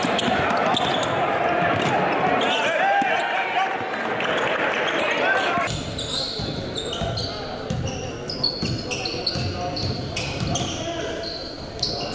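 Live game sound in a gym: a hubbub of crowd and player voices, then, after a cut about halfway through, a basketball dribbled on a hardwood court with repeated thuds and short high sneaker squeaks.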